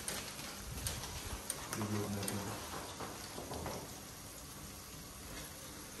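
Faint steady sizzling of mixed vegetables frying in a pot, with a few light clicks and knocks in the first second as eggs and other items are handled on the kitchen counter.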